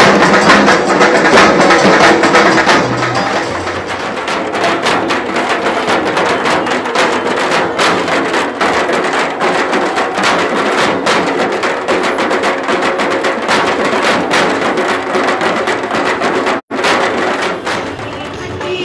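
Several Bengali dhak drums beaten with sticks in a fast, dense rhythm, played together by a group of drummers. The sound cuts out for an instant near the end.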